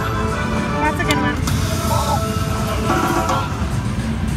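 Video slot machine playing its electronic bonus-win music, with chiming tones and a short rising sweep as the free-game win counts up at the end of the feature, over casino floor hubbub.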